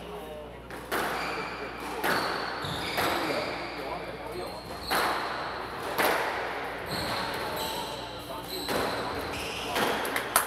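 A squash rally: the ball cracks off rackets and the walls every second or two, with shoes squeaking on the wooden court floor between the shots.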